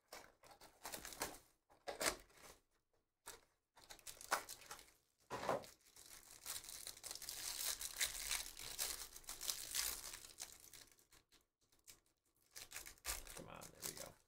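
Trading-card pack wrapper being torn open and crinkled by hand. There are short rustles at first, then a long stretch of tearing and crinkling through the middle, and more rustling near the end.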